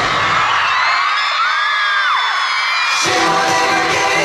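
Live pop song over an arena sound system. Its bass and beat drop out for about two and a half seconds and then come back in, while high screams rise and fall above it.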